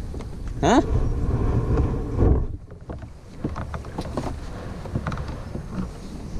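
Low wind rumble on the kayak-mounted camera's microphone that cuts off about two seconds in, followed by scattered light splashes and knocks of water and paddle around the kayak.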